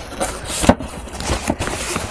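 A cardboard box being handled and opened: its flaps and the packing material inside rustle and crackle, with several sharp knocks, the loudest a little before the middle.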